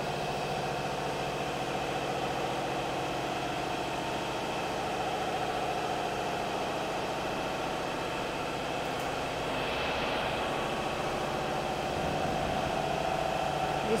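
Steady hum of running machinery, an even drone with no knocks or breaks, swelling slightly about ten seconds in.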